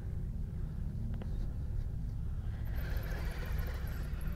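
Axial Capra RC rock crawler with a sensored brushless motor, climbing slickrock: a low rumble with the drivetrain whirring, a small click about a second in, and the whir growing louder in the last second or so.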